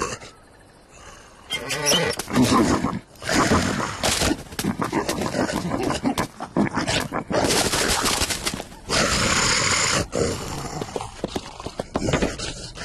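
Cartoon animal vocal effects, growls and roar-like cries, mixed with scuffling and several sharp thumps. It is quieter for about a second near the start, then busy and loud.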